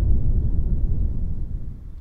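Audio rendering of the LIGO detector's seismic (ground-motion) noise: a low rumble, shifted up in frequency from about 10 Hz so that it can be heard, fading away near the end.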